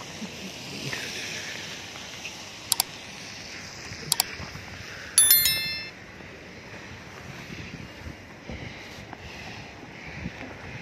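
Two quick double mouse clicks, about three and four seconds in, then a ringing bell chime a second later: the sound effect of a like-and-subscribe reminder animation. Under it runs steady wind and street noise from a snowy roadside.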